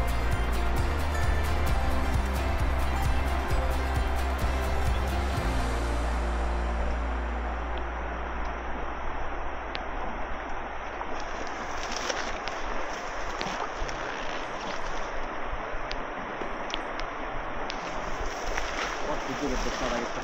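Background music with a steady beat fades out over the first several seconds. After that comes the steady rush of a shallow, fast-flowing river around a wading angler, with a few faint clicks.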